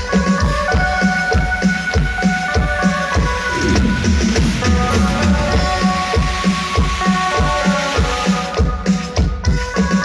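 Live grupera band playing an instrumental passage, a drum kit keeping a steady beat under held keyboard chords, loud.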